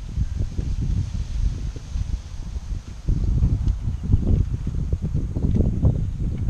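Wind buffeting the microphone outdoors: a gusty low rumble that grows stronger about halfway through.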